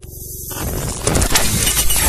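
A YouTube intro sound effect starting out of silence: a dense, noisy sound that swells up over about the first second, then stays loud with several sharp hits.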